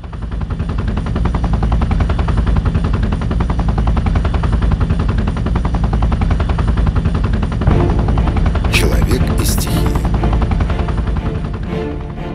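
Helicopter rotor and engine in flight, a loud, steady, rapid thudding that fades in at the start. A couple of short hissing bursts come about nine seconds in.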